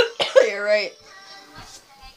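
A woman coughs once, a short sharp burst with her hand over her mouth, followed by a brief vocal sound falling in pitch. It is the cough of someone with a lingering cold.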